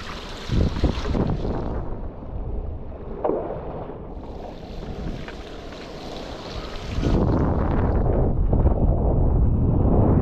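Wind buffeting the microphone of an action camera, with water splashing and hissing around a paddled foil board on choppy water. About seven seconds in, the wind rumble turns louder and lower.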